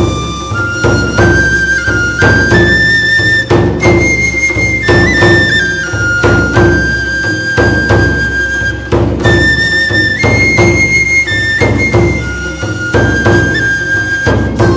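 A Japanese transverse bamboo flute, a shinobue, plays a slow melody of long held notes over regular taiko drum strikes.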